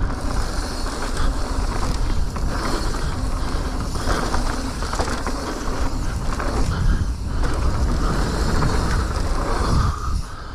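Calibre Triple B full-suspension mountain bike descending dry dirt singletrack at speed: tyre roar on the dirt, chain and frame rattle, with wind buffeting the camera microphone.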